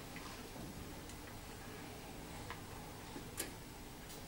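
Faint steady room hum with a few soft, irregularly spaced clicks, the sharpest about three and a half seconds in: small handling noises at a wooden pulpit during a pause in speech.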